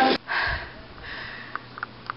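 A woman out of breath from a dance workout, a long breathy exhale just after music cuts off, then a few faint clicks near the end.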